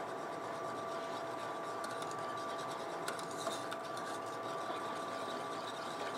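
Wire whisk stirring and scraping around an aluminium saucepan as warm milk is mixed into a thick roux and tomato juice base. Under it runs a steady two-tone hum.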